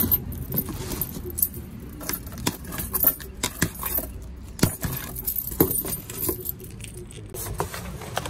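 A bunch of keys on a keyring jangling and clinking as one key is dragged along the packing tape of a cardboard box to slit it open, with scraping on tape and cardboard. The clinks come irregularly.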